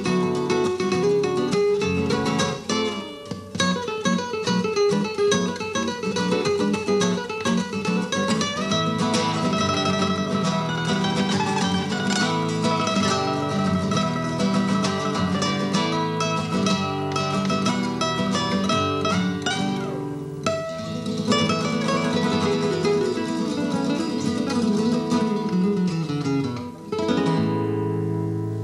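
Two nylon-string guitars playing a flamenco-style duet, with quick picked runs over strummed chords. Near the end the piece closes on a strummed final chord that is left ringing.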